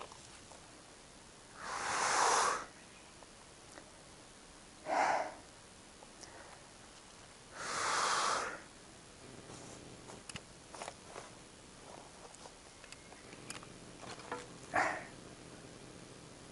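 A man's heavy breaths out, four of them a few seconds apart, the two longer ones about a second each. Faint small clicks and taps come in between.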